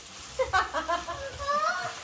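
Voices of people talking at a table, quieter than the surrounding conversation and with no other distinct sound standing out.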